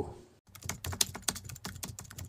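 A keyboard-typing sound effect: a rapid, irregular run of clicks, one per letter as on-screen text is typed out. It starts about half a second in.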